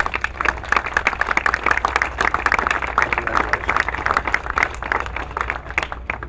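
Audience applauding, a dense run of hand claps that thins out near the end.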